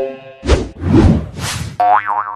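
Cartoon sound effects: three short noisy hits about half a second apart, then a pitched, springy tone that slides slightly down near the end.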